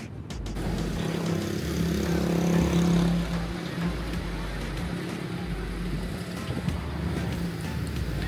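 A bus engine running close by on the street. Its steady drone swells to a peak two to three seconds in, then eases to a lower, steady level. Background music with a beat is heard at the very start and cuts off about half a second in.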